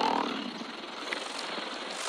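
Electronic dance track in a beatless breakdown: a steady wash of noise across the mids and highs, with no bass and no drums.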